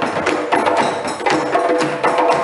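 West African drum ensemble playing a fast, steady rhythm: hand-struck djembes over dunun barrel drums played with sticks.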